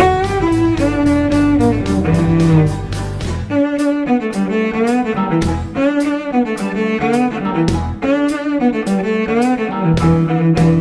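Amplified cello playing a bowed melody in a live band performance, over a steady drum beat. The low bass part drops out about three and a half seconds in and comes back near eight seconds.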